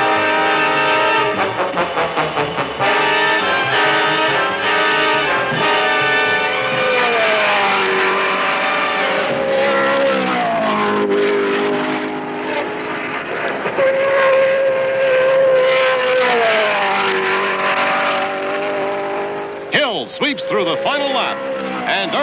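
1960s Indianapolis open-wheel race car engines running at speed. Each engine holds a steady high note, then drops in pitch as a car goes past, several times over.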